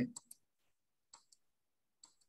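Faint computer mouse clicks: two quick click pairs, the second about a second after the first, as a slideshow is advanced twice.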